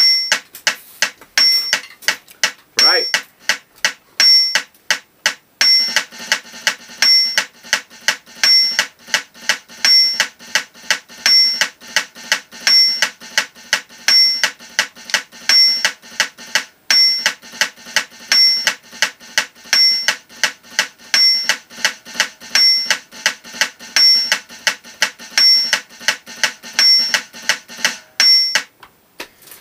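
Drumsticks tapping a stick-control exercise on an electronic drum kit's mesh snare pad against a metronome click at 170 bpm, with a higher beep about every 1.4 s, once every four beats. The strokes start sparse and become a fast, even stream about six seconds in, played quietly for control.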